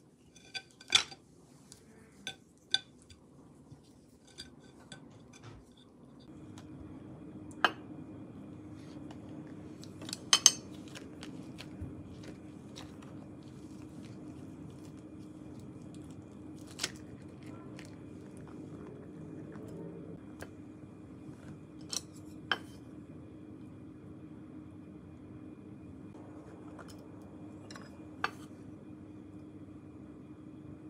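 Scattered clicks and clinks of wooden chopsticks and skewers against ceramic bowls and plates, a quick run of them in the first few seconds and then a few single knocks spread apart. From about six seconds in, a steady low hum runs beneath them.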